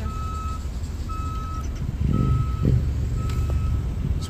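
A vehicle's reversing alarm beeping about once a second, each beep a single steady tone about half a second long, over a low engine rumble that grows louder about halfway through.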